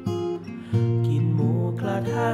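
Acoustic guitar strumming chords in a song, with a fresh chord struck just under a second in and ringing on.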